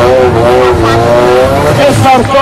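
Drift car sliding sideways with its tyres squealing in a wavering pitch over the steady run of its engine.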